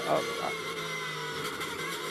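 GT3 race car engine heard inside the cockpit through the onboard camera, holding a steady note.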